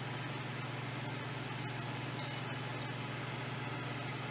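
Steady low hum over a faint even hiss, kitchen room tone with no other sound standing out.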